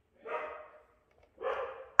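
A dog barking twice, quieter than the voice nearby, each bark fading out over about half a second.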